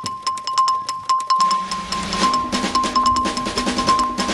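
News-bulletin style theme music: fast ticking percussion over a rapidly repeated high beep, with a low bass note coming in about a second and a half in.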